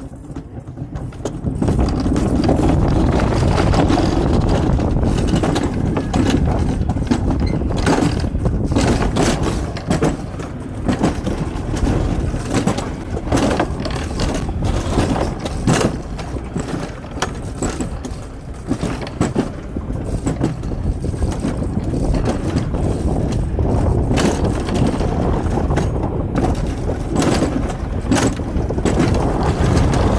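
Mountain coaster cart running along its steel rail: a loud, steady rumble of the wheels with frequent clacks and rattles, starting about two seconds in.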